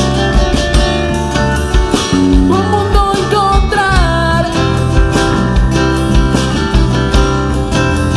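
Live band music: strummed acoustic guitars over electric bass and a drum kit with a steady kick-drum beat, in an instrumental passage. A lead melody slides up and down in pitch around the middle.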